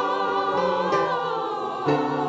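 Adult mixed choir of men's and women's voices singing together, holding long notes that shift to a new chord about once a second.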